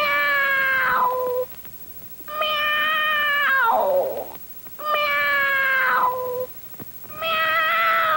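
Cartoon animal voice giving long, drawn-out meow-like cries, one after another, each held for about a second and a half. Several of them slide down in pitch at the end.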